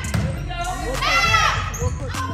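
Volleyball play in a gym: the ball being bumped, with high-pitched calls from the girls on court.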